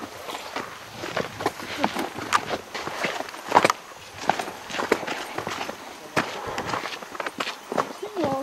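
Footsteps of walkers on a sandy, gritty dirt track: uneven steps, roughly two a second.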